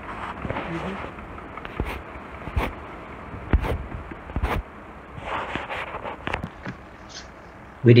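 Water swishing in a plastic gold pan as it is swirled and dipped in a tub to wash the lighter gravel off over the riffles, with four or five sharp knocks in the middle.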